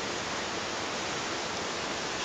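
Steady, even hiss of the recording's background noise, with no other sound.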